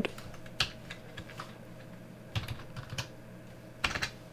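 Computer keyboard keystrokes: about half a dozen separate key presses, spaced unevenly, as numbers are typed into a field.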